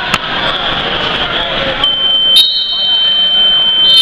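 Crowd voices and shouting in a gym at a wrestling match. Just under two seconds in, a high, steady electronic buzzer tone starts and holds, with a louder burst near the end.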